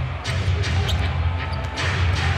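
A basketball being dribbled on a hardwood court, a few separate bounces, over arena music with a steady, heavy bass and crowd noise.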